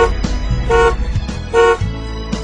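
A car horn honked in three short toots, evenly spaced a little under a second apart, over background music.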